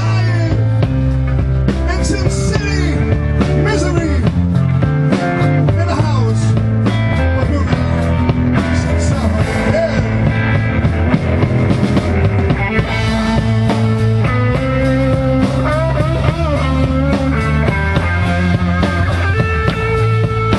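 Live rock band playing an instrumental passage: a Stratocaster-style electric guitar plays a lead line with bent notes over bass guitar and a steady rhythm.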